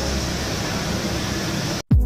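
Steady, even hiss of gym room noise on the camera's recording, cutting off abruptly near the end.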